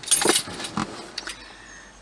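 Handling noise from the camera being adjusted by hand: a short burst of rustling, then a few light clicks.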